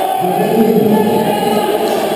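Many voices singing together over a steady background of crowd noise.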